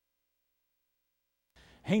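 Near silence: a dead, soundless gap with no room tone at all. Faint room tone starts late in the gap, and a man's voice begins to speak near the end.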